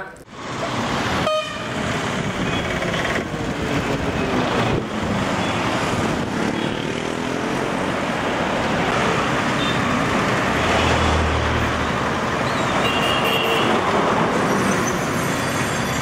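Road traffic at a busy junction: autorickshaws, trucks and motorcycles passing, with short vehicle horn toots and a heavy vehicle's low engine rumble around ten to twelve seconds in.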